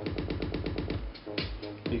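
Electronic dance music track stuttering in a rapid auto-loop roll, the same short slice repeating about a dozen times a second. About a second and a half in, the roll releases back into the normal beat.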